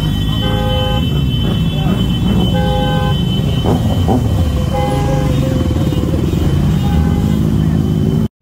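Motorcycle engines running with a steady low rumble while a vehicle horn honks four times in short toots, amid crowd voices.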